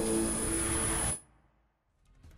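Logo sting sound effect: a steady hiss layered with a low held chord and a thin high whine, cutting off abruptly just over a second in.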